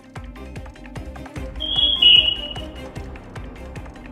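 Background music bed with a quick, even ticking beat over low held notes, and a brief high tone about halfway through that is the loudest part.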